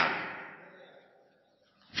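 A man's voice dying away in room reverberation over about a second, then near silence until speech starts again at the very end.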